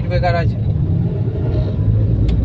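Suzuki car's engine and road noise heard from inside the cabin while driving: a steady low drone.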